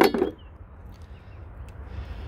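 The plastic cover of a car's under-hood fuse and relay box unlatching with one sharp click and a short clatter as it comes off, followed by a faint low background rumble.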